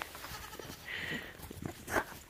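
Young goat kid bleating faintly about a second in.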